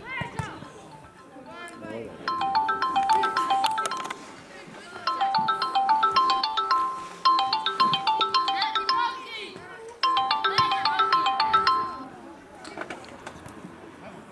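A mobile phone ringtone: a short electronic tune of quick notes, played four times with brief pauses between. Faint voices can be heard behind it.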